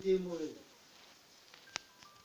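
A man's voice for about the first half second, then a low background with a single sharp click near the end, followed by a brief high beep.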